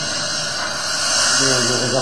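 Compressed air hissing steadily at an air-tank filling rig, a high even hiss with a voice coming in faintly in the second half.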